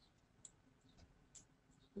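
Near silence with a few faint clicks of a computer mouse, about three spread over two seconds.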